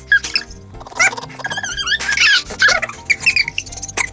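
Two men giggling in fits of high-pitched, squeaky laughter, over background music.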